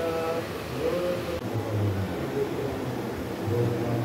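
Men's voices reciting prayers aloud in a drawn-out, chant-like tone, with long held notes between short breaks.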